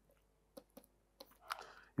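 Faint, sparse clicks of a stylus tapping on a pen tablet as it writes, about four ticks spread over two seconds.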